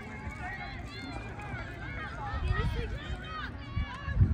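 Indistinct chatter of several voices talking at once, none of it clear words, with a brief low rumble about two and a half seconds in.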